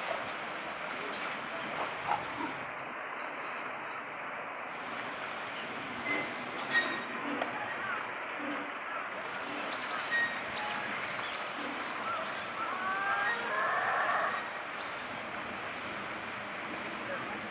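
Steady outdoor background noise with faint distant voices, a few small clicks and short high chirps, and a louder flurry of gliding calls about thirteen seconds in.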